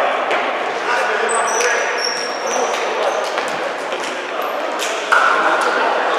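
Players' voices in an echoing sports hall, with several short, high squeaks of indoor shoes on the wooden court and scattered knocks.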